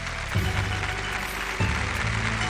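Studio audience applauding over the programme's theme music, whose heavy bass beat hits twice.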